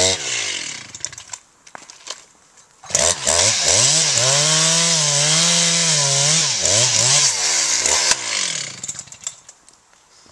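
Two-stroke chainsaw cutting into a pine trunk. It drops to a low idle soon after the start, then revs up loud at about three seconds and holds high revs for about five seconds, wavering under load. Near the end it winds down and fades.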